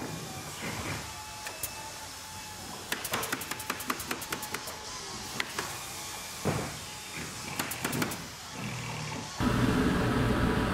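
Atomstack P7 diode laser engraver's gantry motors moving the head back and forth, sped up in time lapse: a low whirring with rapid runs of clicks in the middle and again near the end.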